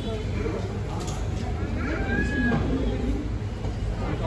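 A toddler's brief high-pitched vocal sound about two seconds in, over low background voices and a steady low hum.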